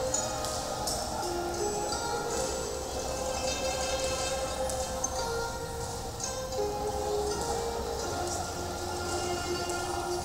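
Instrumental interlude of a slow Chinese song played over loudspeakers: long held melody notes over a steady low accompaniment, with light, high percussive strikes now and then. The singing picks up again just after.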